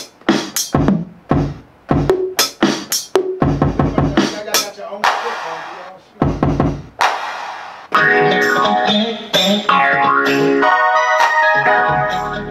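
Drum sounds and 808 bass hits triggered one at a time on an Akai MPC Live's pads as a beat is built. About eight seconds in, a sustained pitched sample starts playing over them.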